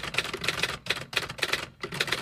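Typing sound effect: a rapid, uneven run of typewriter-style key clicks with a couple of brief pauses, matching on-screen text being typed out.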